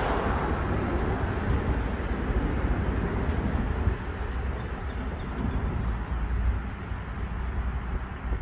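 Exmark Lazer Z zero-turn mower engine running in the distance, its higher-pitched noise dying down in the first second and leaving a steady low rumble.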